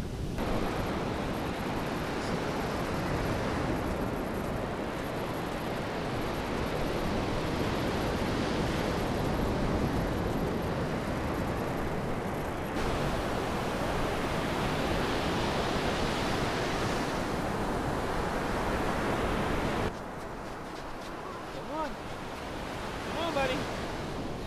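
Ocean surf and wind rushing on the microphone, a dense steady roar of noise that drops away abruptly near the end, leaving quieter breaking waves.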